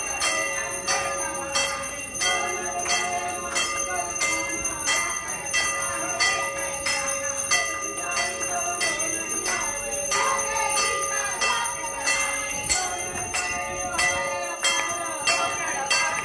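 Temple bells rung steadily during an aarti: evenly repeated metallic strikes over a continuous ringing tone, with voices behind them.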